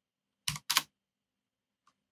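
Two keystrokes on a computer keyboard, short sharp clicks about a quarter second apart, as a terminal command is typed and entered.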